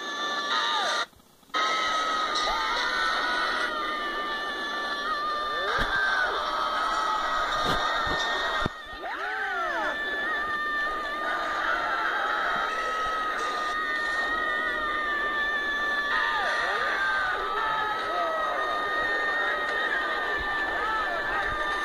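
Film soundtrack heard off a TV: loud, continuous high-pitched screaming, with swooping whistle-like glides over it. It breaks off briefly about a second in.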